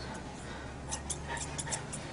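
Grooming scissors snipping through a Newfoundland's coat to even out the shawl: a run of quick, faint snips in the second half, over a low steady hum.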